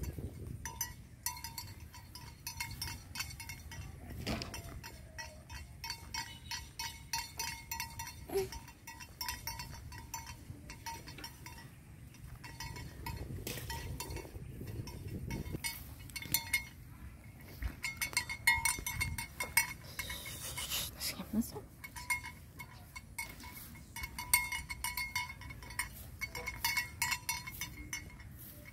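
Water buffalo grazing close by: irregular tearing and crunching as it crops and chews grass. A faint high ringing tone comes and goes throughout.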